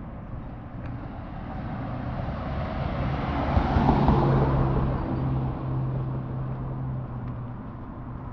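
A motor vehicle driving past on the street: its tyre and engine noise swells to a peak about halfway through and then fades, with a steady engine hum underneath.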